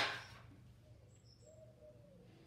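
A sharp click right at the start, then a few faint, brief high chirps of a small bird in the background about a second in.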